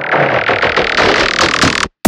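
Dubstep-style electronic track in a build-up with the bass cut out: a hissing noise riser sweeps upward over rapidly repeated hits. It cuts off to silence just before the end.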